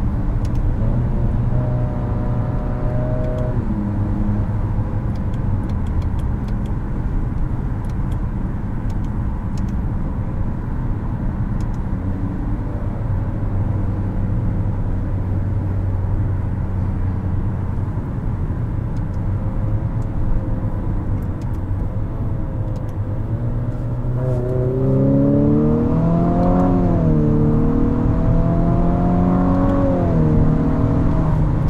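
Cabin sound of a 2022 Infiniti QX55 driving on the road: the 2.0-litre variable-compression turbo four-cylinder hums steadily over tyre and road noise at about 55 mph. About 24 seconds in it pulls harder and its note climbs, dips briefly and climbs again as the car accelerates.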